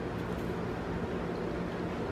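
Steady low hum with a faint even hiss: room tone. No distinct crunching or chewing sounds stand out.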